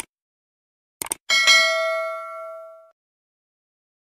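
A click, then a quick double click about a second in, followed by a bright bell ding that rings for about a second and a half and fades away: a subscribe-button click and notification-bell sound effect.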